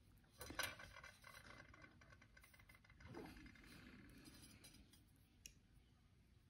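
Near silence, with faint clicks and light rustling of thin copper wire being handled, a little louder about half a second in.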